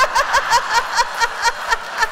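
Laughter from an audience in a large hall, with one voice laughing in quick ha-ha pulses, about five a second, over the crowd.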